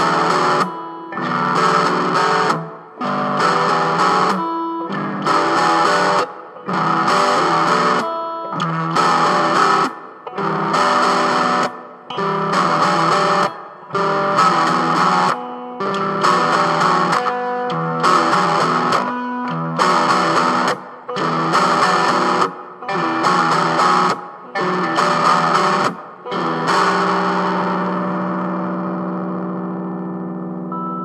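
Distorted electric guitar through effects playing strummed chords, each chord cut off short with a brief gap, roughly one a second. Near the end a final chord is left to ring and slowly fades.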